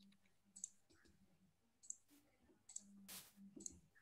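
Near silence with a few faint, scattered computer mouse clicks as screen sharing is started.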